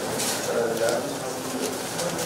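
Indistinct voices and paper ballots being handled, with a low cooing call.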